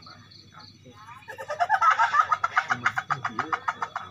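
A person laughing in a fast run of high-pitched bursts, starting about a second in and running on for a few seconds.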